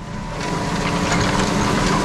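Tractor engine working steadily under load, heard from inside the cab, while pulling a Tolmet Astat disc harrow through the field: a steady drone with a faint constant whine.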